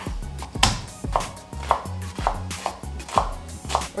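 Chef's knife chopping garlic on a wooden cutting board, a steady series of sharp strikes about two a second.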